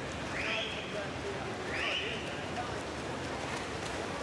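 Indoor swimming-pool race ambience: a steady wash of splashing from freestyle swimmers and spectator noise, with two short high-pitched calls about a second and a half apart.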